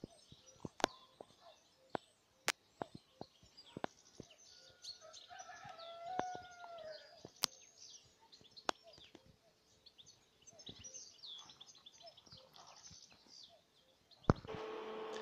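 Faint birdsong: small birds chirping, and a rooster crowing once about six seconds in. Scattered sharp clicks and snaps sound throughout.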